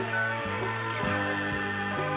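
Psychedelic space-rock music, an instrumental stretch with guitar: sustained chords that shift twice in quick succession.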